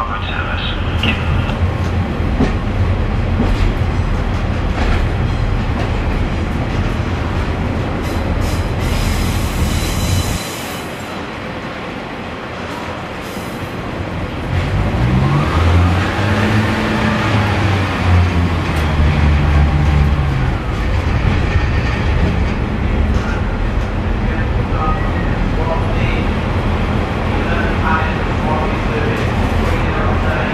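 Class 142 Pacer diesel railbus heard from inside the carriage while under way: the underfloor diesel engine drones steadily with the rumble of the running train. About nine seconds in there is a brief hiss. The engine note then drops away for a few seconds before it revs up again, its pitch rising and then falling.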